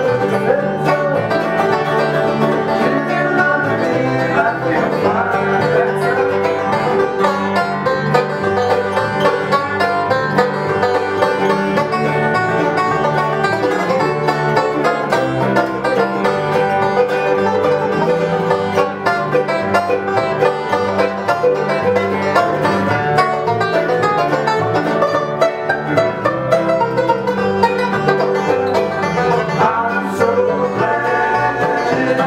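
A bluegrass band playing steadily, with banjo, mandolin, acoustic guitar and upright bass together.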